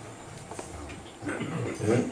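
A pause in a man's talk with low room noise, then a short burst of his voice about a second and a half in.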